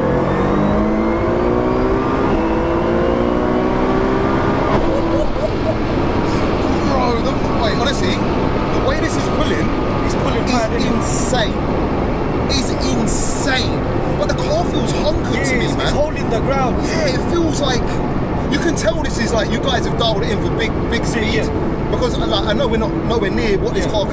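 Cabin sound of a heavily tuned Nissan R35 GT-R's twin-turbo V6 pulling hard under acceleration, its pitch rising for about the first five seconds. Then it settles into loud, steady engine and road noise with voices talking under it.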